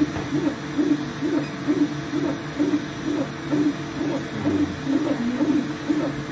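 Elegoo Neptune 4 Plus 3D printer's stepper motors whining as the print head moves back and forth laying down filament, a tone that rises and falls a little over twice a second.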